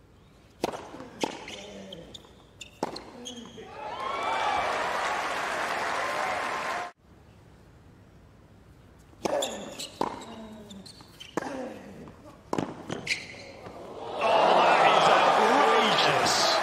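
Tennis rally on a hard court: a handful of sharp racket strikes on the ball, then the crowd bursts into cheering and applause as the point ends. After an abrupt cut, another short exchange of racket hits ends in louder cheers and applause near the end.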